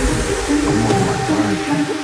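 Hardstyle electronic music: a synth line of short notes that bend up and down in pitch over a heavy bass, the deepest bass dropping out near the end.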